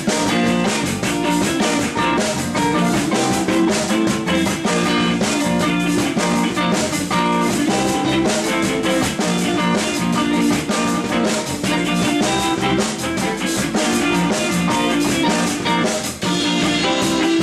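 A rock band playing an instrumental live in a room: two Fender Stratocaster electric guitars over drum kit and bass guitar, with steady drum hits throughout.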